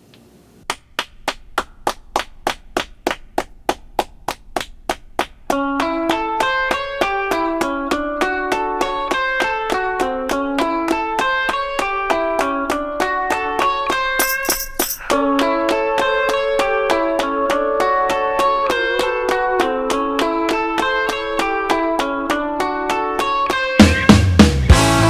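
Intro of an indie rock song: a steady, fast tick beat of about four ticks a second plays alone. About five seconds in, a repeating picked chord pattern joins it, and the full band crashes in right at the end.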